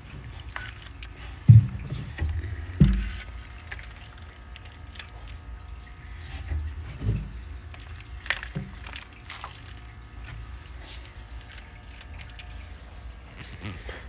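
Handling noise from a soil-covered DIY terrarium background being moved about by hand. Two dull thumps come in the first three seconds, then scattered light knocks and rustles over a low rumble.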